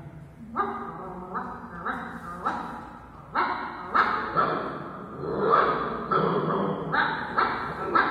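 Two cartoon dogs barking and snarling at each other in the animation's soundtrack: a steady run of short, sharp barks, about two a second.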